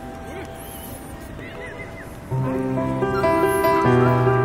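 Background music: a quiet passage, then a louder layer of held notes with a strong bass comes in a little past the halfway point.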